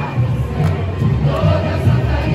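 Samba school bateria playing a samba with pulsing surdo bass drums, under a crowd of voices singing the samba-enredo.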